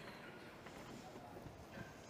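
Faint footsteps on a stage floor over the quiet room tone of a large hall.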